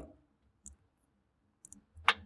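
Near silence with a few faint clicks, one about two-thirds of a second in and a quick pair near the end.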